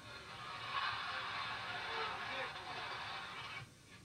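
Crowd noise from an old football game broadcast playing through a TV speaker: an even wash of crowd sound with faint voices in it, which drops away near the end.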